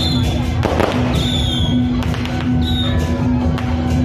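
Firecrackers popping in irregular sharp cracks over loud festival music with a steady low held note and a few high falling notes.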